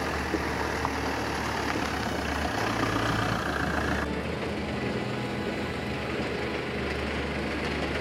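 Camper van driving on a dirt track: a steady engine and tyre noise over low background music. About halfway through the noise changes to a different, duller outdoor noise.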